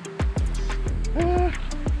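Background music with deep, falling kick-drum beats over a steady low bass, and a short held note about a second in.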